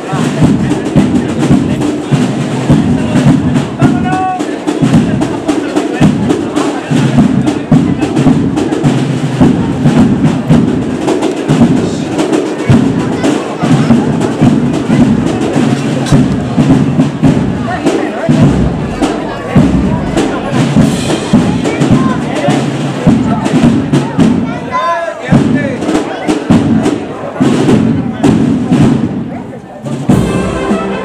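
Drums of a street processional band playing, bass drum and snare percussion, mixed with the chatter of a crowd around them.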